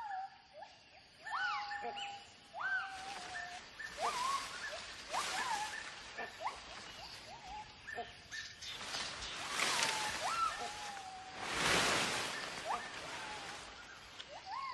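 White-handed gibbon calls: a series of hooting notes, each swooping up sharply and falling back, about one a second, the gibbons' territorial vocal display. Leafy branches are shaken in short rushing bursts in between, loudest near the end.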